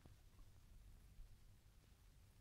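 Near silence: a faint low rumble and hiss, with one faint click at the start.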